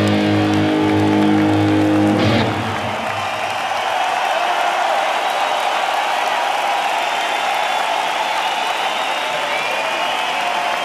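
Electric guitar through the arena PA, holding a sustained chord that cuts off about two seconds in. An arena crowd then cheers and applauds.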